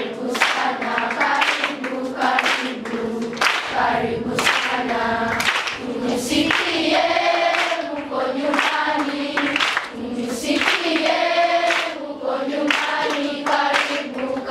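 A large group of children singing together as a choir, with rhythmic hand clapping.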